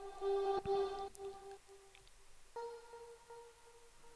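A house track's lead/atmosphere sound played dry, with all its effects bypassed: a thin, plain tone repeating in short notes, then stepping up to a higher repeated note about two and a half seconds in.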